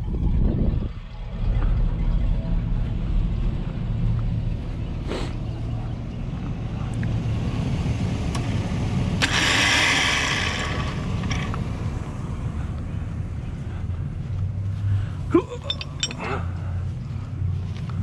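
Hummer H2's V8 engine idling steadily. About nine seconds in, a rushing, hiss-like noise lasts about a second.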